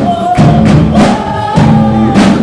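Live rock band playing loudly: a woman's lead vocal holding long notes over electric guitar, bass guitar and drums, with steady drum and cymbal hits.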